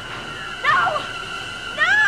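Two short, high, bending cries, about a second apart, over a steady high ringing tone.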